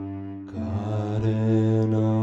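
Slow instrumental music: a bowed cello comes in about half a second in on a long held note over a steady low drone.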